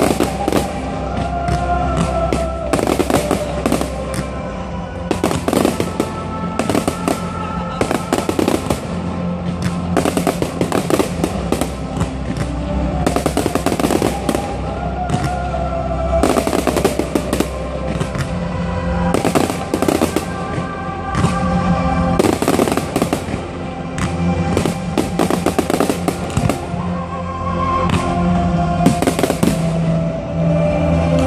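Aerial fireworks bursting, many bangs and crackles in quick, irregular succession, over music played with the display.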